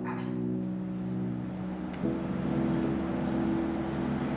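Soft background music of sustained chords, moving to a new chord about two seconds in.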